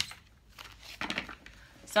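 Tarot card being drawn off the top of the deck and laid on the table: a sharp tap at the start, then soft card-handling rustle. A woman's voice says "So" at the very end.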